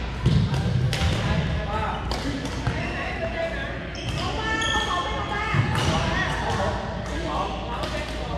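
Voices talking in a large, echoing sports hall, with several sharp thuds and hits scattered through it from play on the badminton courts.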